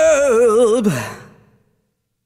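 A male rock vocalist holds the song's final note with a wide, even vibrato, then lets it slide down in pitch and fade out within about a second and a half.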